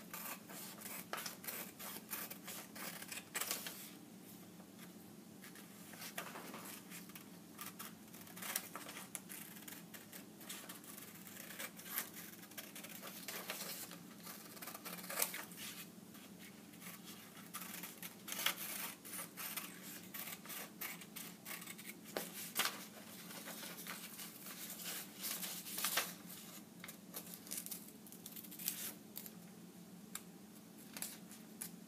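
Scissors cutting through paper in many short, irregular snips, sometimes in quick runs, as a drawn top-hat shape is cut out.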